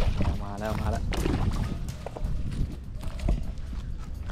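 Splashing of a hooked snakehead thrashing at the water's surface on the line, a few sharp splashes. A short wordless vocal sound in the first second, over a low rumble on the microphone.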